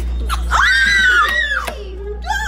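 A girl's high-pitched squeal, starting about half a second in and lasting about a second, rising, holding and then falling in pitch.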